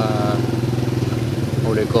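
Small motorcycle engine running steadily at low revs: a loud, even, fast-pulsing low drone.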